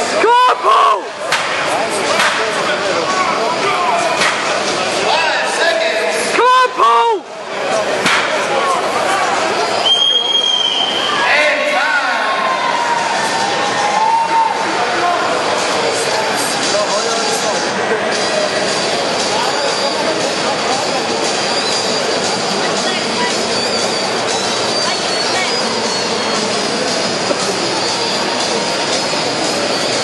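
Large crowd of spectators chattering, with loud shouts near the start and again about six to seven seconds in, then a steady hum of voices.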